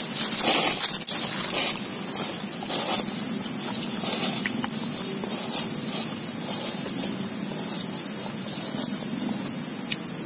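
Chorus of crickets: a steady, unbroken high-pitched buzz in two bands.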